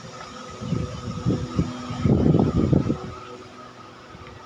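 Steady hum of a large electric air-cooler fan, holding several even tones. Irregular low bumps and rumbles from about a second in to about three seconds in.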